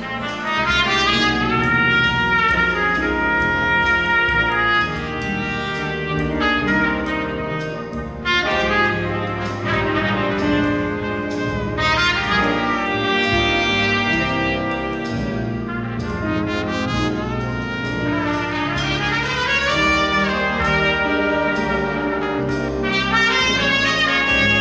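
A jazz big band playing live. Trumpets and trombones lead, with saxophones, over piano, guitar and drums. The brass lines swell and bend over a steady cymbal beat.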